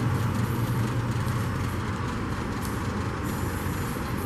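Steady low rumble with an even hiss over it, unchanging throughout.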